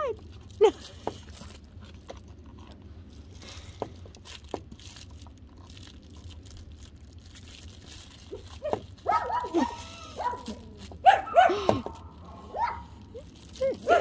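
Mini goldendoodle puppies barking and yipping in play, a cluster of short calls rising and falling in pitch in the second half, after several seconds of only faint clicks and rustles.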